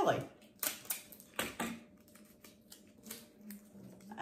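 Irregular light clicks and rustles of hands handling plastic eggs, paper coffee filters and tape, the sharpest about one and a half seconds in.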